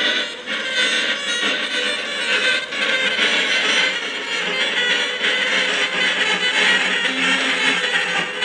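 Live free-improvised experimental music for saxophone and electronics: a dense, sustained wash of noisy sound with a few held tones and no steady beat.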